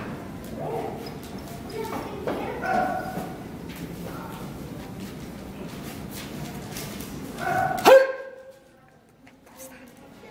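Indistinct voices in a large hall, with a short, loud cry about eight seconds in, after which the background drops away abruptly before faint voices return near the end.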